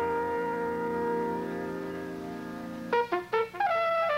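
Live jazz band with trumpet: the horns hold a long chord that slowly fades, then near the end the trumpet plays a few short, quick notes and a falling phrase.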